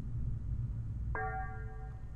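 A ceramic coffee mug gives a short bell-like clink about a second in, its ring fading within a second, over a low rumble of the mug being handled near the microphone.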